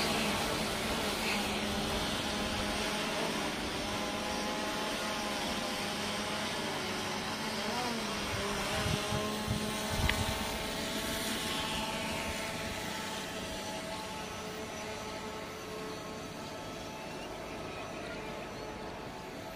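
Quadcopter drone in flight with a water bottle hanging beneath it, its propellers giving a steady multi-pitched whine that fades slowly as it flies off. A few brief thumps come about halfway through.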